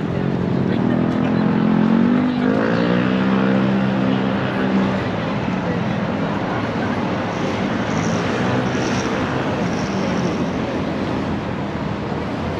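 A vehicle's engine pulling away in street traffic. Its pitch rises over the first few seconds and then holds steady, over a constant wash of traffic noise and crowd chatter.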